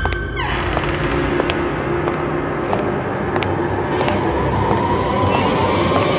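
Suspense background score from a horror drama: a dense, noisy musical texture with scattered sharp ticks and a slowly falling tone in the second half.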